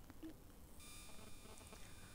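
Near silence: room tone, with a faint, steady high whine that starts just under a second in.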